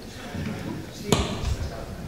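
Handheld microphone being handled as it is passed on: low rumbling handling noise and one sharp knock on the microphone about a second in.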